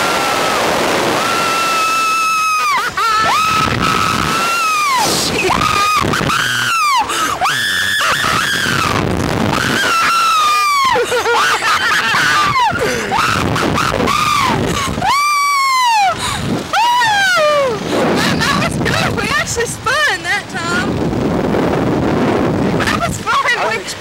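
Two riders screaming as a Slingshot reverse-bungee ride launches and bounces them: long high cries that rise and fall, one after another, giving way to shorter gasps near the end.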